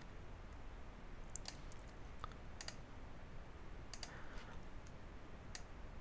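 Several faint, scattered clicks of a computer mouse and keyboard over a low hiss.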